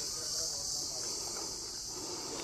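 A continuous high-pitched insect chorus, held steady without a break.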